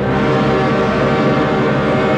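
Opera orchestra playing a loud, dense passage, a fuller chord coming in at the start and held.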